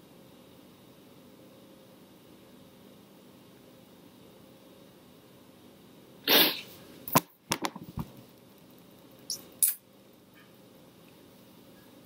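Quiet room tone, then about six seconds in a short, loud, breathy burst. A few sharp clicks and knocks follow over the next few seconds.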